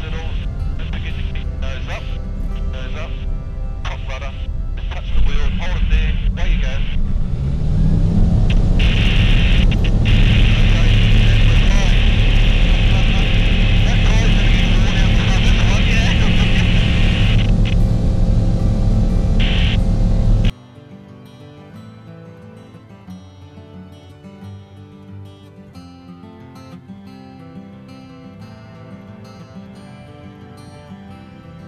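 Light aircraft's propeller engine heard from the cockpit, running at low power through the touchdown, then rising in pitch about eight seconds in as power is added and held steady. About twenty seconds in it cuts off suddenly, giving way to soft background music.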